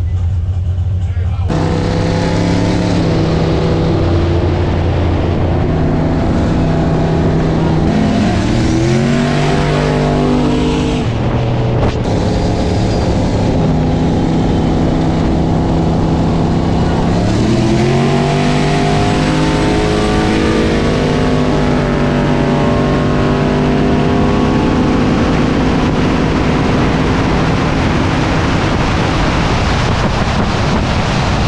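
V8 engine at full throttle accelerating hard, its pitch climbing steeply about 8 and 17 seconds in, with drops between them at the gear changes, over steady wind and road noise.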